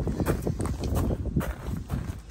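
Footsteps on concrete, a quick, uneven run of taps and scuffs.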